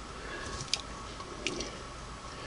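Quiet room tone with a few faint, brief clicks from small handling of the machine and tools.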